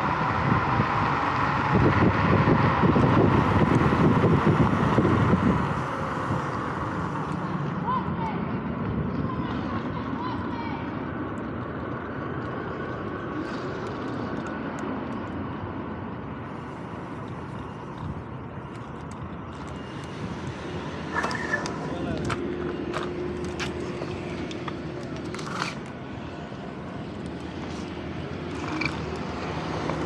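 Wind rushing over the microphone of an electric scooter riding at speed, heaviest for about the first six seconds and lighter after that. Scattered clicks and knocks come in the second half.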